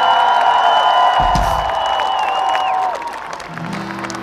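Several long, steady high notes held together, stopping one after another between two and three seconds in, with a brief low thump about a second in.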